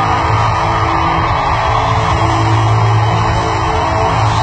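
A live band playing loud, steady rock-style music through an arena's PA system, heard from high up in the stands.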